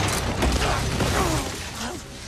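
Film fight sound effects: a run of clattering, cracking impacts and short grunts as a body falls from a wooden roof and lands in dry leaves.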